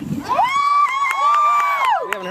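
A spectator's long, high-pitched cheering shout, held for about a second and a half as a player runs, with a second voice cheering under it.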